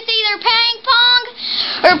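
A young girl's high, sing-song voice: short melodic phrases with long held notes, more sung than spoken.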